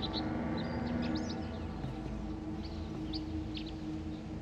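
Sustained chords of background film music, with small birds chirping briefly and intermittently above them.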